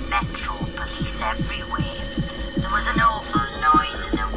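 Acid tekno playing from vinyl records: a fast kick drum, about three beats a second and each beat dropping in pitch, under a sweeping, wavering acid synth line.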